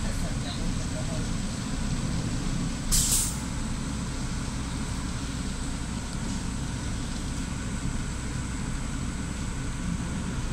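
Steady low drone of a Solaris city bus's engine and drivetrain heard from inside the bus, with a short, loud hiss of compressed air about three seconds in, typical of the pneumatic air brakes releasing.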